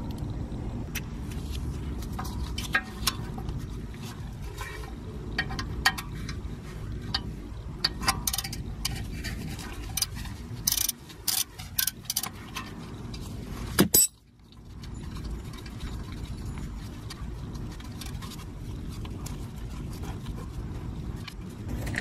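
Scattered clicks and light clinks of a wrench and plastic connector being handled while an ABS wheel speed sensor is removed, over a steady low rumble. A sharp click about two thirds of the way in, followed by a brief drop in the background.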